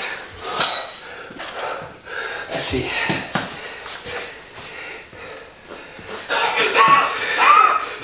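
Men talking over the clink and knock of metal parts as an engine is worked into a motorcycle frame: a short ringing metallic ping about half a second in, then a duller knock a couple of seconds later.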